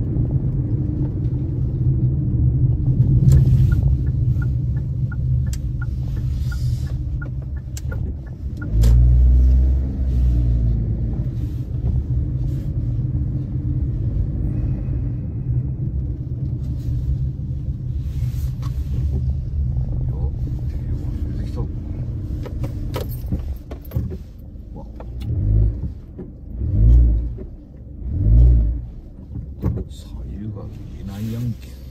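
Car engine and road rumble heard from inside the cabin while driving slowly. A heavier low surge comes about nine seconds in, and three more heavy low swells come near the end.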